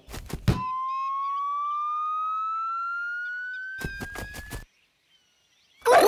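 Cartoon sound effects for a football kick: a few quick thuds as the ball is struck, then a single slide-whistle-like tone rising slowly as the ball flies, ending in a rapid cluster of knocks about four seconds in.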